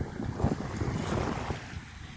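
Wind buffeting the microphone in gusts over small waves lapping on a sandy sea shore.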